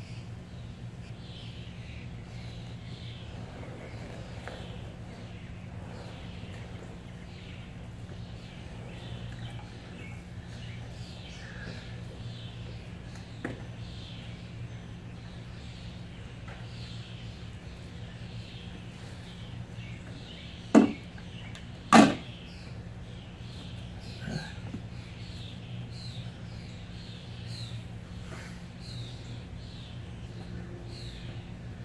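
Two sharp, loud knocks about a second apart, around two-thirds of the way through, from an upended hot tub being worked around on its edge, with fainter knocks before and after. Behind them, short falling bird chirps repeat over a steady low hum.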